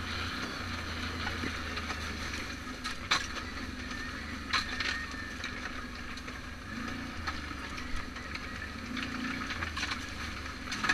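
Off-road vehicle engine running at a low, steady pace over a rough dirt trail, with rattling and wind noise on the microphone. A few sharp knocks stand out, about three seconds in, near the middle and about eight seconds in.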